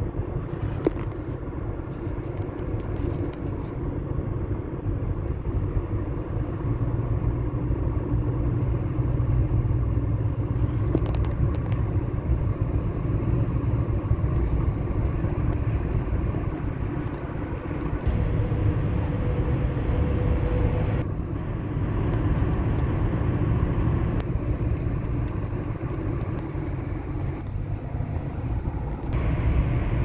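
Car driving along a city road, heard from inside the cabin: a steady low rumble of engine and tyre noise that rises and eases a little with speed.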